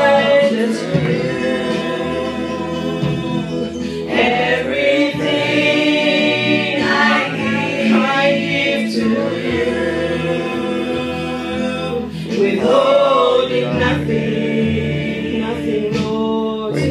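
A group of voices singing a church praise song together in long, held phrases.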